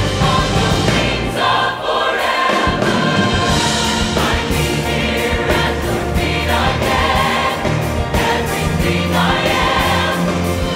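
Mixed choir singing with a string orchestra playing underneath. The bass drops out briefly about a second and a half in, then comes back in under the voices.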